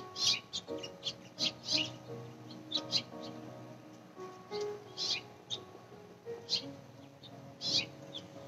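Birds chirping in short, scattered calls over soft background music of long, held notes.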